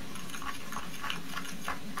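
A metal utensil scraping and clicking in a glass beaker of damp iron powder and activated charcoal: a run of short scrapes, several a second, over a steady low background hum.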